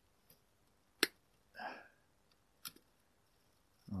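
Side cutters snipping plastic cable ties: one sharp snap about a second in and a lighter click near the end, with a short softer sound between them.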